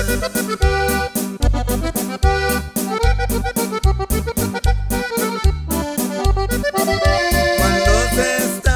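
Instrumental break of a norteño corrido: an accordion plays the melody in held notes over a steady bass-and-drum beat.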